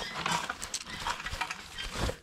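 Stiff brush scrubbing loose dirt and corrosion debris across a 6.0 LS V8's cylinder heads and lifter valley, a run of short, irregular scratchy strokes.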